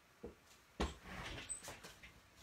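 Faint handling noises on a crafting desk as things are moved about: a light click, then a knock just before a second in, followed by rustling and shifting.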